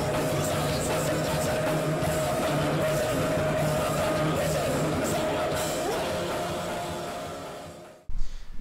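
Noisy punk rock band playing: distorted electric guitar, bass and drums with steady cymbal crashes. The music fades out over the last second or two.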